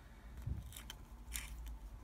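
A few faint clicks and scrapes of small plastic parts on an RC crawler chassis being handled.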